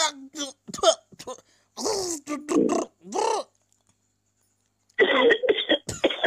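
Several short, drawn-out vocal sounds from a person, rising and falling in pitch, then a pause, then a voice over a phone line about five seconds in.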